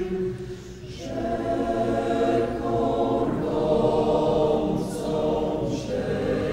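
Mixed choir singing, holding long chords; a phrase ends just after the start and the next begins about a second in.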